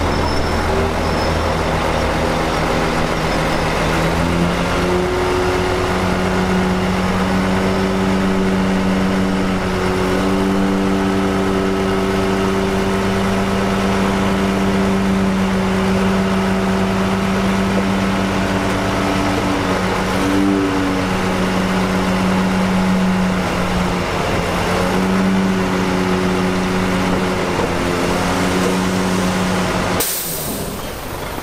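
Heavy diesel engine of a construction machine running steadily under load. Its pitch rises a few seconds in, holds, drops briefly about two-thirds of the way through, then climbs back.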